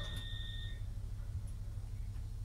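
Low steady rumble inside an HST passenger coach standing at a platform. A thin, steady high tone from the announcement system fades out under a second in.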